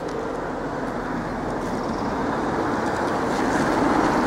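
A road vehicle driving nearby, its tyre and engine noise swelling steadily as it approaches.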